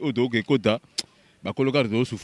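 A man speaking into a microphone, with a short pause and a single sharp click about halfway through.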